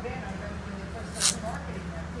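A short, sharp rip of masking tape being torn about a second in, over faint talking voices.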